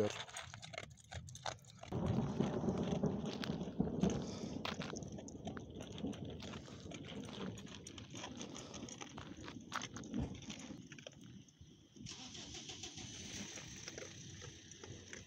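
Distant thunder rumbling, rising about two seconds in and slowly dying away over several seconds, as a storm approaches. Short crunching clicks from a dog chewing dry kibble out of a plastic tub run through it.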